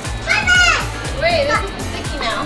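Young children's high-pitched voices and squeals over music with a steady beat.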